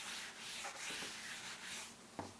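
Board duster rubbing chalk off a chalkboard: a faint, dry scrubbing in short repeated back-and-forth strokes.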